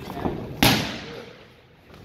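A boxing glove punch landing on a focus mitt: one loud smack a little over half a second in, echoing briefly around the gym.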